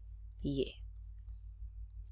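Faint, sparse clicks of a stylus tapping on a tablet screen as letters are handwritten, over a steady low electrical hum.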